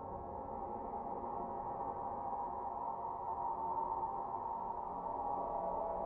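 Ambient drone music: a dense bed of held tones with no beat, slowly swelling in loudness.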